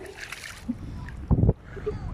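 Wind rumbling on a phone microphone, with a brief louder low burst about a second and a half in, and faint splashing of feet wading through shallow water.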